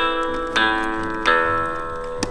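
Electronic Disney Pixar Coco toy guitar playing strummed guitar chords through its built-in speaker. A new chord sounds about every three-quarters of a second, each ringing and fading.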